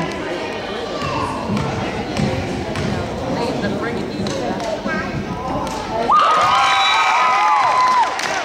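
Gymnasium crowd chatter with the thuds of a basketball being bounced during a free throw. About six seconds in, a loud high held cheer rings out for about two seconds, dropping slightly in pitch.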